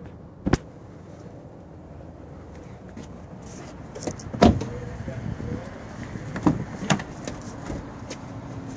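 Car doors of a 2011 Volkswagen Golf hatchback being handled: a few clicks and knocks, with one louder thump about four and a half seconds in as a door is shut.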